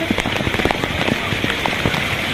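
Water dumped from a water-park tipping bucket pouring down and splashing onto a person and the ground: a steady, dense rush of spatter.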